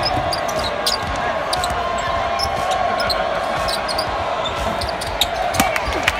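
Live college basketball game heard from courtside: steady arena crowd noise, with a basketball bouncing on the hardwood and brief high sneaker squeaks as players move.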